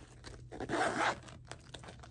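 The zipper of a clear vinyl cosmetic bag being drawn: one rasping pull lasting just under a second, about half a second in.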